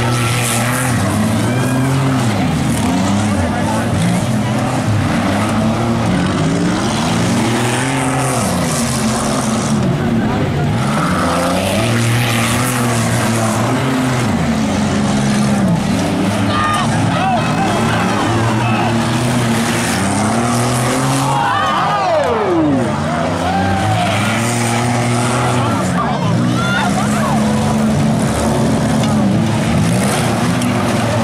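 Several stock compact race car engines running hard on a dirt oval, their pitch rising and falling over and over as the cars speed up and slow down through the laps.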